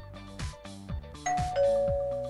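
Two-tone doorbell chime, a higher 'ding' followed by a lower 'dong', ringing out about a second in over background music with a regular beat.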